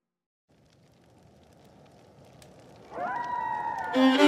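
A gap between songs in the background music: a moment of silence, then a faint crackling hiss that slowly grows. About three seconds in, a string instrument slides up in pitch and holds, opening the next country song.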